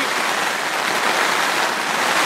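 Rain falling steadily on tent fabric in a windstorm, heard from inside the tent as an even, unbroken hiss.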